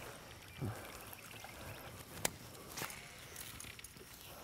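Faint handling sounds as a freshly caught bass is unhooked by hand, with a light trickle of water and two sharp clicks a little past halfway.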